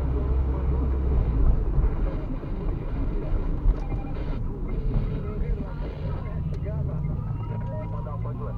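Car driving slowly, heard from inside the cabin: a steady low rumble of engine and tyre noise.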